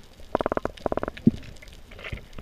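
Underwater sound: two brief rattling trains of rapid clicks, about half a second apart, followed by a single low thump.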